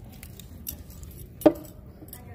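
Low room hum with a few light clicks and clinks of handling, and one sharp click about one and a half seconds in.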